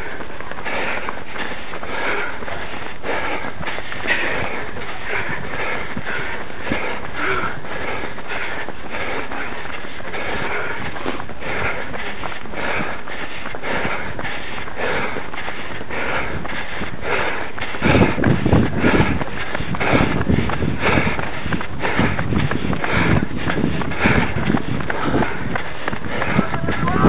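Footfalls of a runner on a tarmac path, about three a second, with the camera jostling at each stride. From about eighteen seconds in, gusty wind buffets the microphone with a low rumble.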